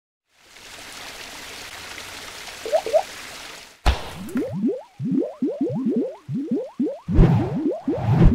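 Animated logo sound effects: a steady airy whoosh, a sharp hit just before four seconds in, then a quick run of short rising bloops and splats that grow heavier near the end.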